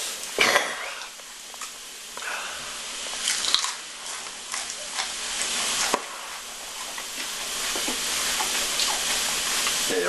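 A man chewing bird's eye chillies close to the microphone: wet mouth noises with small scattered clicks.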